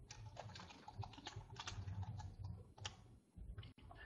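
Typing on a computer keyboard: irregular, fairly faint key clicks.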